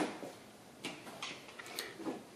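A few faint, light ticks and clicks of hands handling a potted fig rootstock and its plastic pot, spread irregularly across two seconds.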